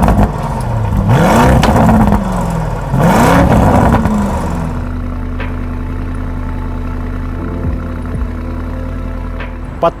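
Lamborghini Urus's twin-turbo 4.0-litre V8 revved in quick blips from idle, its pitch rising and falling twice. It settles to a steady idle about five seconds in.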